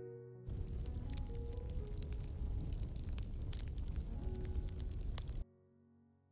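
Lid of a Paragon glass-fusing kiln being lowered and shut by its handles: rumbling handling noise with scattered clicks and knocks that starts about half a second in and cuts off suddenly near the end, over soft background music.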